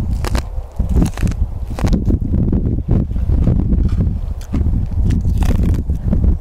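Bites into and chews a raw, ripe ear of Sugar Buns yellow sweet corn. The kernels crunch in many short, sharp clicks, picked up close by a lapel microphone over a low rumble.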